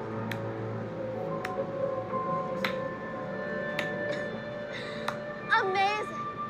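Suspenseful film underscore: held drone tones with a sharp tick about every second and a quarter. A woman's voice comes in near the end.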